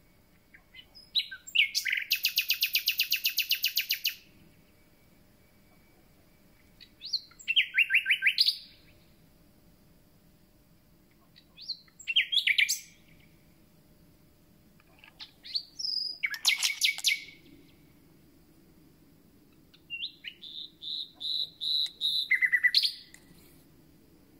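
Common nightingale singing: five separate phrases a few seconds apart, each a fast run of loud repeated notes. The last phrase opens with a series of whistles growing louder before breaking into a rapid trill.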